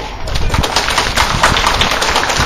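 A string of firecrackers going off in rapid, irregular pops.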